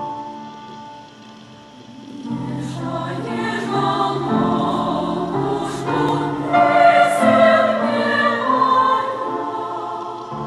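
Choir singing sustained chords. The sound swells louder about two seconds in, is fullest in the second half, and eases off a little near the end.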